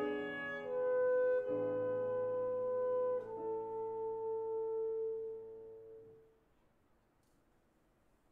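Alto saxophone with piano accompaniment playing the closing held notes of a classical piece. The saxophone steps through a few long sustained notes over a low piano chord, and the final chord dies away about six seconds in.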